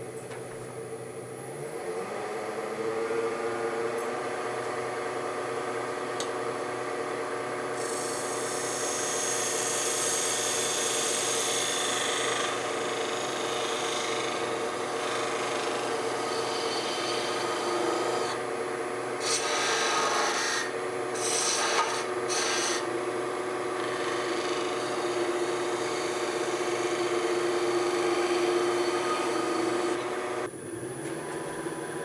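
Wood lathe running with a steady motor hum while a small skew chisel scrapes and shaves the end of a spinning apple-wood mallet head. The hum rises in pitch over the first couple of seconds, and the cutting hiss grows louder in two stretches, about a third and two thirds of the way through.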